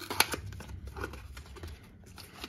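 A small cardboard box is handled and its tuck flap pulled open by hand, giving a few light clicks and paper rustles.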